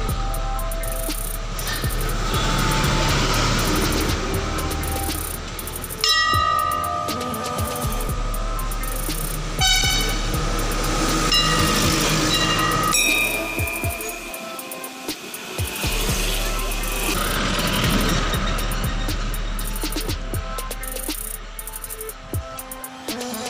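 Road traffic passing close by, with vehicle horns honking several times: short blasts near the middle of the stretch and a longer one as a heavy truck goes by.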